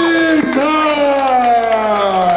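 A person's voice drawing out a long call: one held note breaks off about half a second in, and a second long call follows, its pitch sliding slowly down.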